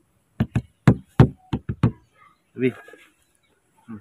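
A quick, irregular run of about eight sharp knocks over a second and a half, followed by a brief human voice.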